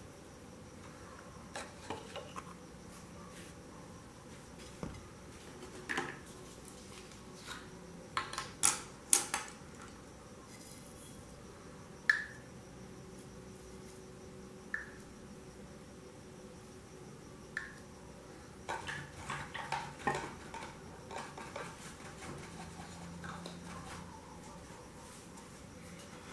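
Scattered small clicks, taps and clinks of paint jars and a brush being handled while paint is picked up for mixing, with a few sharper clinks near the middle.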